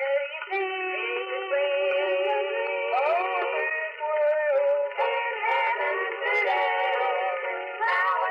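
A boys' gospel quartet singing in close harmony, several voices holding and sliding between notes together. The old radio recording has a narrow, thin sound with no deep bass and no high treble.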